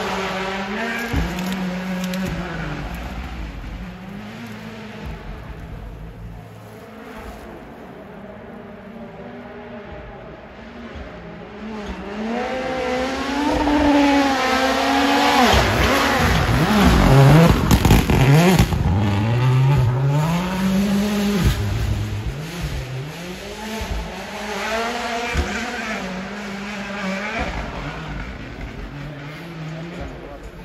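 Rally car engine revving hard through gear changes as it approaches, growing louder to a peak about 17 seconds in with a cluster of sharp cracks, then pulling away with the revs rising and falling as it fades.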